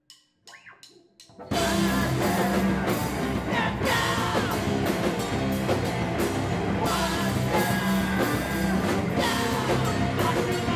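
A few sharp taps, then about a second and a half in a live rock band starts at full volume: distorted electric guitars, bass and a drum kit playing a driving beat.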